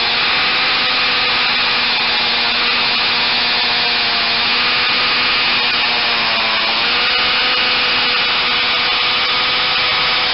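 Ridgid hammer drill running without a break, boring a hole in concrete with a quarter-inch carbide masonry bit. The motor's pitch sags briefly twice, about four seconds in and again about six and a half seconds in, as the bit bites under load.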